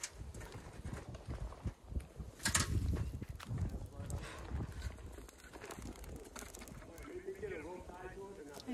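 Scattered knocks and clicks as green bamboo tubes are handled and stood up in a wood fire pit, over a low rumble; the sharpest knock comes about two and a half seconds in.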